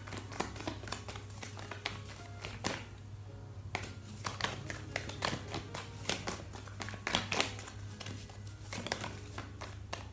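A deck of fortune-telling cards being shuffled and handled by hand: irregular papery snaps and taps, with clusters of them about four and seven seconds in.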